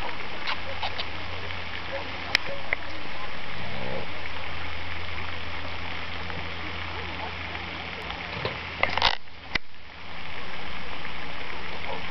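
Indistinct voices over a steady background noise, with a few sharp clicks and a louder clatter about nine seconds in.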